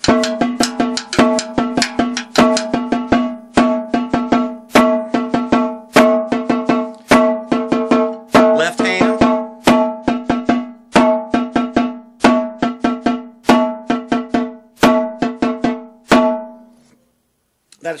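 Snare drum playing the flam accent rudiment: repeated flams, each followed by two taps in a triplet pattern, at an even tempo, with one hand's strokes on the rim giving a woody click against the ringing drumhead. The playing stops about two seconds before the end.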